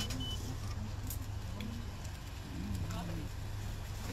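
A steady low hum with faint voices in the background, and two short high beeps right at the start.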